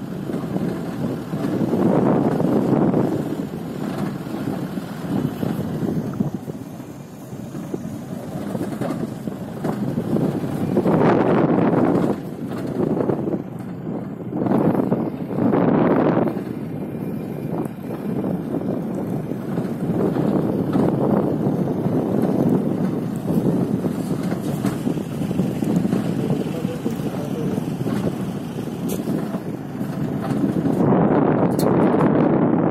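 Steady travel noise of a moving vehicle, with wind buffeting the microphone so that the sound swells and dips every second or two.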